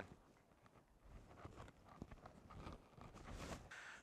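Faint, irregular footsteps in snow with soft rustling; otherwise near silence.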